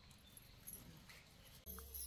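Near silence: faint outdoor ambience with a few faint high chirps. Shortly before the end the sound jumps abruptly to a louder steady low hum.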